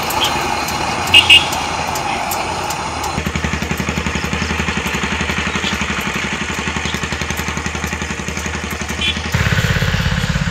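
A small vehicle engine running steadily with a fast, even pulse, getting louder near the end. About a second in come two short, loud beeps in quick succession.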